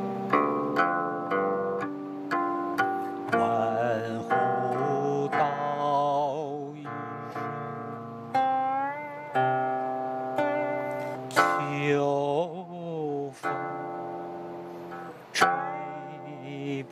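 Guqin (seven-string Chinese zither) played solo: single plucked notes and chords ring on, with wavering vibrato on held notes and sliding pitch glides made by the left hand moving along the string.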